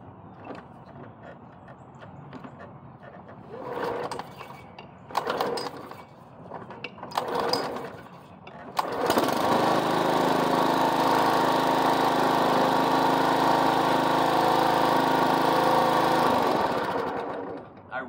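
Walk-behind push mower's small gas engine being pull-started: a few short pulls, then it catches just before halfway through, runs steadily for about seven seconds, and dies away near the end.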